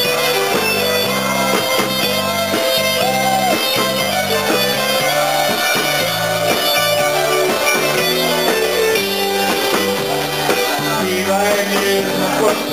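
Live band playing the instrumental introduction of a song: electric guitar and drums over a steady bass line, with held melody notes above, before the vocal comes in.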